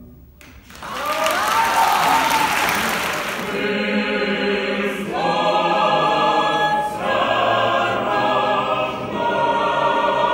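Audience applause with a solo voice over it for about three seconds, then a male choir and two women soloists singing a carol in phrases about two seconds long.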